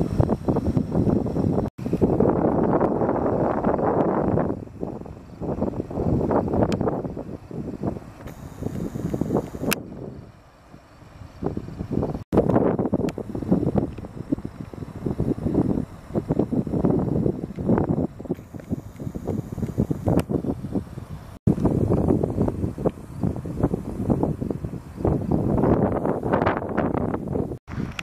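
Wind buffeting the camera microphone: a loud, low, gusting noise that eases off briefly about ten seconds in.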